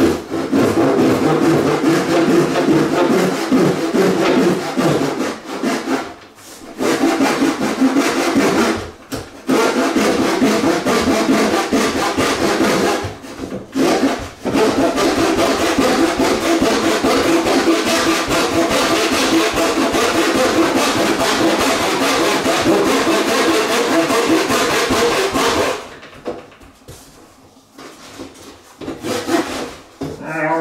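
Hand saw cutting through a wooden skirting board in rapid back-and-forth strokes, with a few brief pauses, stopping a few seconds before the end.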